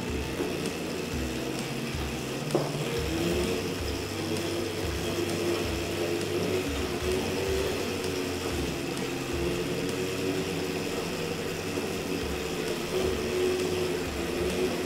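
Electric Crazy Cart go-kart driving under its own steering: a steady motor whine whose pitch wavers slightly, with short, irregular lower whirs underneath.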